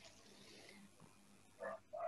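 Near silence: room tone on a video-call audio feed, with one short faint voice-like sound near the end.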